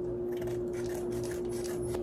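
Kitchen scissors snipping open a plastic sauce sachet, with faint crinkling of the packet as it is handled, over a steady hum.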